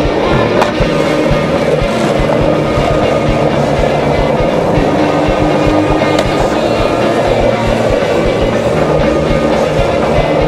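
Skateboard wheels rolling on asphalt, with two sharp clacks of the board popping or landing: one under a second in and one about six seconds in. A music track plays underneath.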